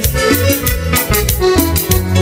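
Live Latin dance band playing an instrumental passage: a sustained lead melody over bass notes and a steady percussion beat.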